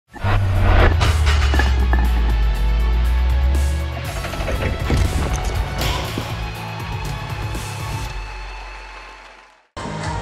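Intro sting music with a heavy deep bass hit and crashing, shattering impact effects, which then fades away and cuts off near the end.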